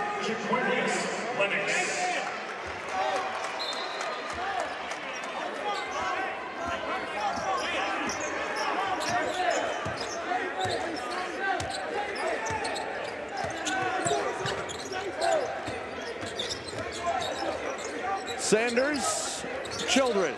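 A basketball is dribbled on a hardwood court during live play, with short bounces all through. Players' and spectators' voices fill the arena around it.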